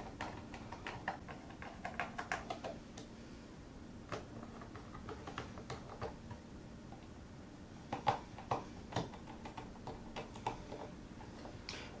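Small screwdriver working the screw that holds the mainboard inside a 2011 Mac Mini: scattered faint clicks and taps of the tool on the screw and the machine's internals. A few louder clicks come about eight to nine seconds in.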